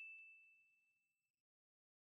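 Bell-like 'ding' sound effect of a subscribe-button notification bell, one high ringing tone fading away within about a second, with a faint click just after it begins.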